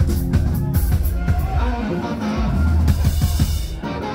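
Live rock music: distorted electric guitar and drum kit playing together, with steady drum hits throughout.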